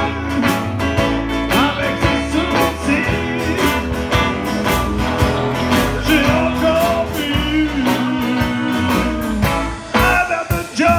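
Live band playing a song: a drum kit keeps a steady beat under electric and acoustic guitars, with bending guitar lines over the top.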